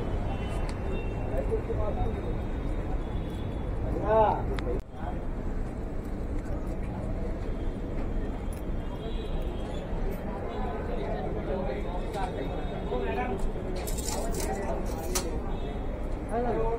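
Busy street and market pavement ambience: passersby talking over a steady traffic rumble, with one loud voice about four seconds in.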